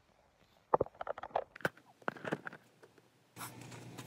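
Handling noise from the phone filming: a cluster of knocks, taps and rustles as it is moved and set down. About three and a half seconds in, a steady low hum with background hiss starts suddenly.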